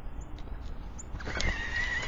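Electric motor of a Droll Yankees Flipper squirrel-proof feeder whining as its weight-triggered perch ring spins to throw off a squirrel. It starts about a second in: a steady high whine with a slight waver, under a few small clicks.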